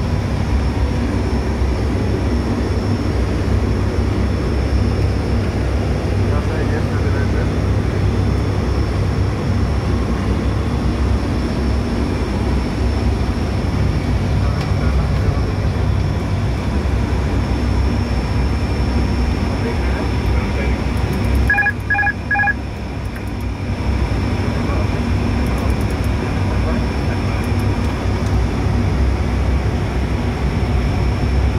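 Steady drone of an ATR 72-600's Pratt & Whitney PW127 turboprop engines and propellers heard from inside the cockpit, with a constant high whine above the low rumble. About 21 seconds in, three short electronic beeps sound in quick succession.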